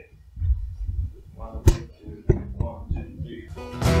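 A few quiet knocks, a sharp click and short stray guitar notes, then near the end an acoustic guitar starts strumming with a drum kit as the song begins.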